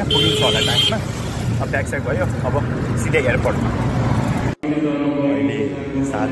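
Road noise and rumble from a moving open rickshaw, with a man talking over it. About four and a half seconds in it cuts off abruptly to a quieter indoor hall where a man's voice continues.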